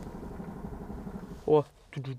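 A steady low rumble, broken about one and a half seconds in by a short burst of a voice speaking.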